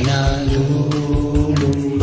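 Karaoke duet recording of a Tagalog love song, with one long held sung note over a steady beat and bass line.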